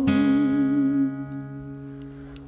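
A young girl's voice holding a sung note with vibrato over a ringing acoustic guitar chord; both fade away after about a second, like the close of the song.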